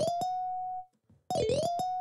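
A picked-bass soundfont note from LMMS's SF2 Player sounds twice, each a single plucked note held under a second, starting with a bright pick attack and sliding up into pitch. The notes are pitched so high that they don't sound like a bass and would need to come down by octaves.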